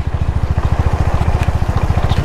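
Motorcycle engine running at a steady road speed, its exhaust beating in a rapid even pulse, under a hiss of wind and road noise.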